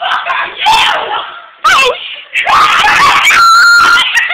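People screaming: several loud screams with sliding pitch, then one long high-pitched scream held through the last second or so.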